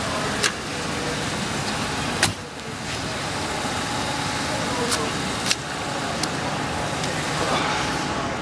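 Steady outdoor motor-vehicle noise, a car running nearby or passing traffic, with indistinct voices. Several sharp clicks cut through it, the loudest about two seconds in.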